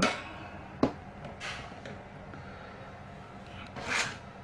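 A single sharp click about a second in, then faint handling noise and a soft knock near the end, over low steady room noise.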